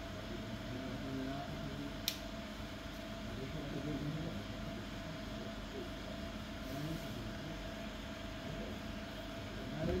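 A steady, even hum with hiss, holding fixed tones, and one sharp click about two seconds in.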